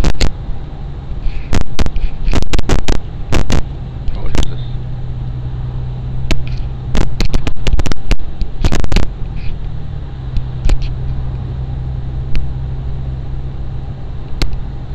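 Steady low drone of a car driving, heard inside the cabin, with clusters of loud, sharp clicks and knocks through the first nine seconds and only a few after that.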